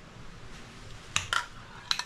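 A few short, sharp clicks and taps from a clear plastic ornament ball and a spray paint can being handled: two about a second in and two more near the end.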